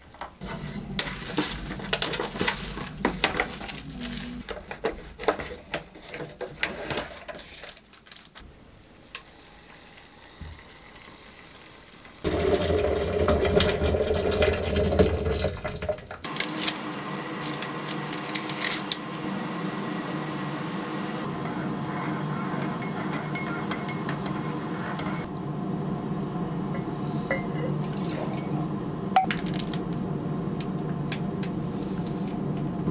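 Hot water poured from an electric kettle into a ceramic mug, splashing unevenly with light clinks. After a short lull, water rushes into a plastic pitcher and then runs into it in a steady stream, growing slightly louder as it fills.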